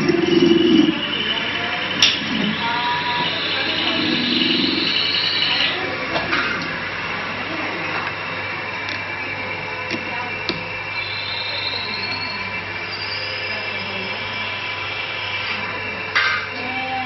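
Steady machine hum with several constant tones, indistinct voices in the background and a few sharp clicks.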